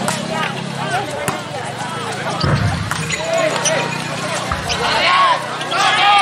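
Volleyball being struck by hands during a rally, a few sharp smacks, over continual overlapping shouts and chatter from players and spectators that grow louder near the end.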